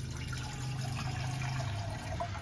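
Kitchen mixer tap running, its stream pouring into a small saucepan as it fills, with a steady low hum underneath.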